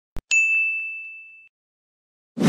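A short click, then a single bright ding sound effect, a bell-like chime that rings and fades out over about a second.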